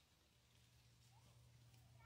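Near silence, with a faint steady low hum from about half a second in.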